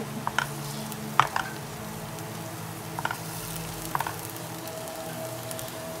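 Soy protein frying in butter in a pan, sizzling steadily, with a few light clicks and scrapes from a plastic spatula stirring it.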